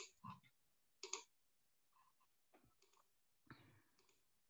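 A few faint, sparse computer mouse clicks in near silence, as a screen share is started and a slide presentation opened.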